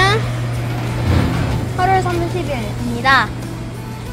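Small handheld battery fan running with a steady low motor hum, with a child's short vocal sounds over it about two and three seconds in.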